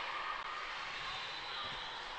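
Steady background noise of an indoor volleyball gym: a faint, even murmur of the crowd and court, with no distinct hits or calls.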